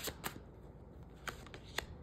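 Tarot cards handled in the hands as a card is drawn from the deck: a few light card clicks and flicks, one near the start and two more about a second and a half in.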